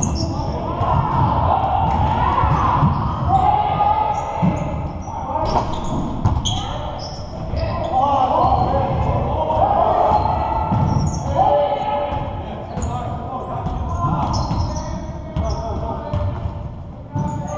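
Basketballs bouncing on a hardwood gym floor during a game, repeated thumps echoing in a large gym hall, with players' voices calling out.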